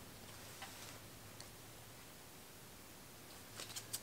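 Near silence: quiet room tone with faint handling of soap bars at a wire soap cutter. A couple of tiny clicks come early, and a quick cluster of small clicks comes near the end.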